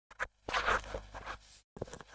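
A scratching, rustling noise in two bursts, the first about a second long and the second shorter, with a brief click just before them.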